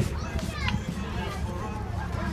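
Children's voices, with a high, rising-and-falling squeal about half a second in, over a steady low rumble.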